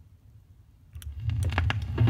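A 1974 reggae 7-inch vinyl single on a turntable: faint rumble and ticks from the lead-in groove, then a click about a second in as the music starts with heavy bass.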